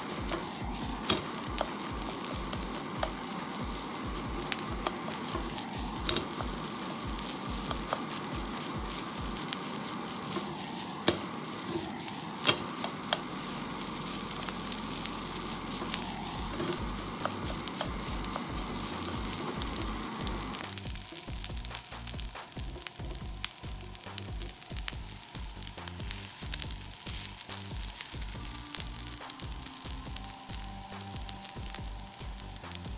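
Fried rice sizzling in a hot frying pan as it is stirred and turned with a wooden spatula. A few sharp knocks of the spatula on the pan stand out. The sizzling drops away about two-thirds of the way through.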